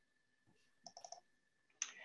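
Faint computer mouse clicks while a screen share is being started: a quick run of three or four about a second in, then one more near the end.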